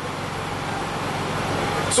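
Steady rushing background noise with a faint low hum, growing slightly louder toward the end.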